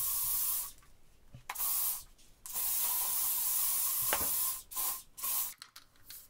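Aerosol spray can hissing in separate bursts: one spray that stops under a second in, a short one about a second and a half in, a long spray of about two seconds, then two quick puffs near the end.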